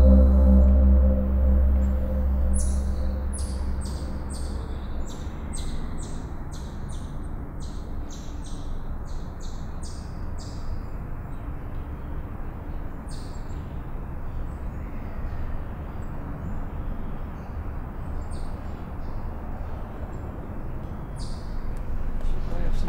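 Soft ambient music fading out over the first few seconds, giving way to a steady rushing noise. Over it runs a quick series of short, high bird chirps, with a few more scattered chirps later on.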